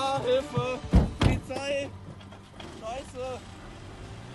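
Two car doors of a Volkswagen Beetle slammed shut in quick succession about a second in, with excited voices around them.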